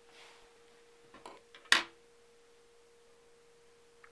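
Scissors snipping a clump of white bucktail: a few small clicks, then one sharp snip just under two seconds in. A faint steady hum runs underneath throughout.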